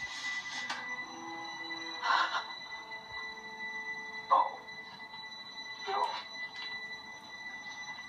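Film soundtrack heard through a television speaker in a small room: a young man crying in short sobs about every two seconds, over soft held notes of score and a faint steady high-pitched whine.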